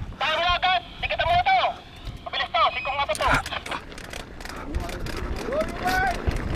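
People shouting in high, raised voices at the start gate, then about halfway through the rattle and hiss of mountain-bike tyres rolling over loose gravel as the bike sets off.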